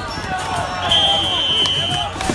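Referee's whistle blown in one long steady blast, starting about a second in and lasting about a second, over players' and spectators' voices.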